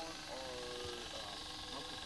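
Faint, muffled voice speaking through a drive-thru intercom speaker during an order, over a steady low background hum.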